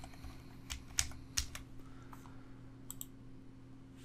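Computer keyboard keystrokes, a handful of separate, spaced-out taps while a short word is typed, over a faint steady low hum.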